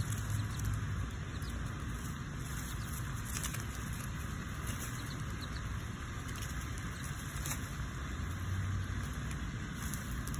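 Steady low background rumble with a faint hiss, and a few faint soft ticks.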